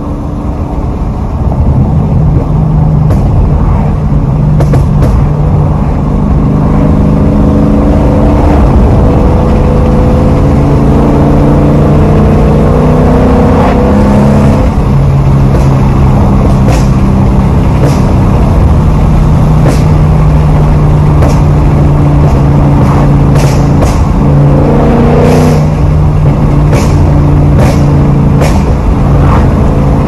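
Ford Mustang GT's 5.0 V8 running under way, heard from inside the cabin. Its pitch holds steady for a few seconds at a time, then steps up or down with the throttle.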